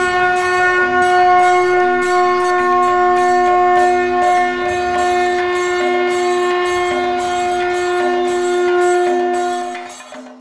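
Closing music: one long held wind-instrument note, with a lower note pulsing about once a second and light regular taps above it, fading out near the end.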